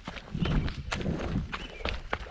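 Running footsteps on a forest trail covered in dry fallen leaves, a quick even beat of about three to four footfalls a second, each crunching step a sharp strike.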